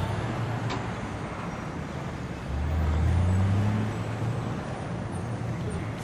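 A motor vehicle engine running over a bed of road noise, growing louder with a slight rise in pitch about two and a half seconds in, then easing off.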